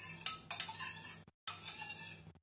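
Metal teaspoon stirring and scraping inside a small metal bowl, with several light metal-on-metal clinks. The sound breaks off briefly just after a second in.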